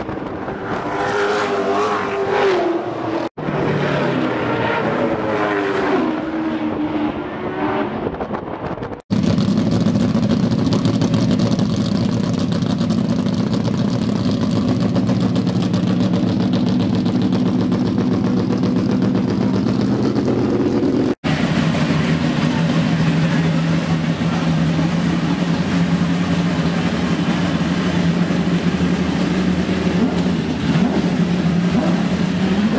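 Race car engines passing on the track, their notes sweeping down in pitch as each goes by. About nine seconds in, a race car engine runs steadily at constant speed in the pits.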